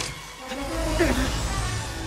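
Film sound-effects mix: a steady low rumbling drone, with a short pitched voice-like sound about half a second to a second in as the glowing lasso pulls taut around the arm.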